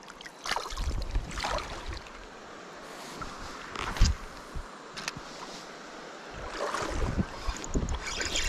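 Water sloshing around hands and legs as a small bass is let go in a shallow river, with gusts of wind rumbling on the microphone. Two sharp clicks about a second apart come with the next cast of a spinning rod.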